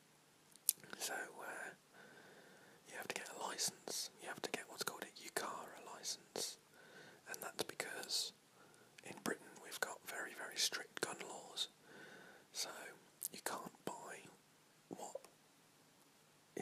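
A man whispering, speech only.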